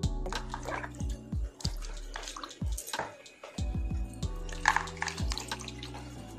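Background music with a bass beat over splashing and sloshing water as hands scrub aloe vera leaves in a basin of soapy water.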